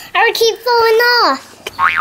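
A young child talking in a high voice; the last word is drawn out and falls in pitch.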